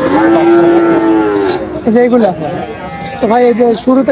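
A young bull calf mooing: one long, steady call lasting about a second and a half, followed by a couple of shorter vocal sounds.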